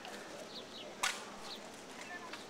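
One sharp smack a little past halfway: a small rubber handball being struck. A few faint short high chirps come before and after it.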